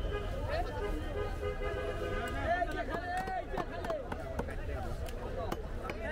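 Voices talking in a busy fish market over a steady low rumble, with a few short knocks as fish is cut on a fixed curved blade.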